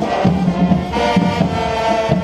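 Marching band playing: trumpets and trombones hold chords over repeated bass drum beats, the full band coming in together at the start.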